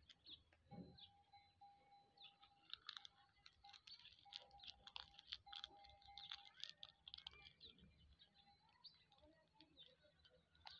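Faint chirping of small birds, many short chirps in quick clusters, busiest in the middle, with a thin steady tone that breaks on and off.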